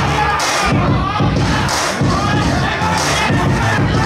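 Fight crowd shouting and cheering, many voices yelling at once.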